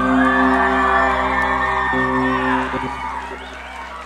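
Live rock band holding its closing chord, the notes ringing out steadily while the crowd cheers and whoops, then fading away in the last second or so.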